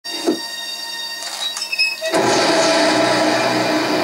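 Movie trailer soundtrack played through a television and picked up off the set: a thinner passage, then a dense, sustained swell about two seconds in.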